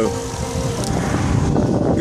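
Steady rumbling road and traffic noise while riding along a street, swelling after about a second.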